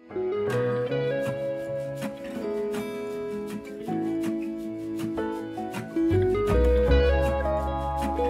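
Background music track of plucked guitar notes, with a low bass joining about six seconds in.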